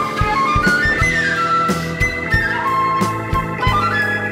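Prog rock band playing an instrumental passage: a concert flute carries a melody in held notes that climb and fall in steps, over bass guitar, guitar and a steady drum beat.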